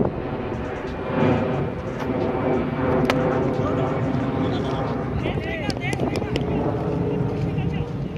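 Young men's voices calling and shouting during a cricket game on an open ground, over a steady low rumble.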